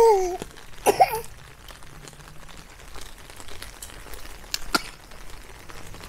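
Two short cries from a nearby animal: a loud one falling in pitch at the start, then a shorter one about a second later. A single sharp click comes near the end, over faint rain.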